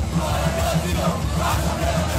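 Punk rock band playing live, heard from among the audience, with voices shouting over the music.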